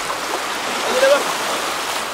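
Shallow surf washing in over a sandy beach, a steady rush of water, with a short vocal sound about a second in.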